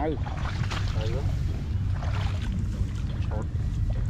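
Wind buffeting the microphone with a steady low rumble. A man makes a few short murmured "ừ" sounds near the start and about a second in.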